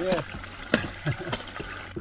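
A small pick or hoe striking into a muddy earth bank, with one sharp knock a little under a second in, over a steady trickle of stream water.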